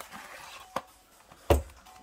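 Cardboard packaging being handled as the contents come out of a card collection box: a small click, then a sharper knock about a second and a half in.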